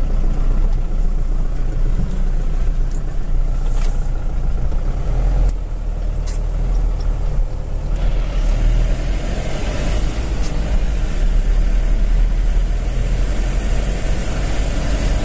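Steady low rumble of a car's engine and tyre noise, heard from inside the cabin while driving at road speed, with a few brief knocks in the first half.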